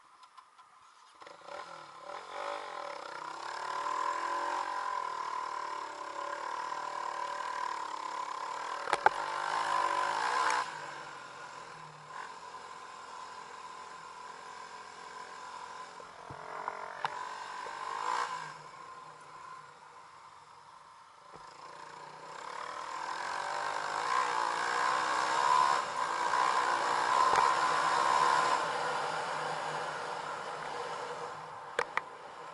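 Dirt bike engine under way on a sandy trail, revving up and easing off several times with quieter stretches between surges. A sharp knock comes about nine seconds in.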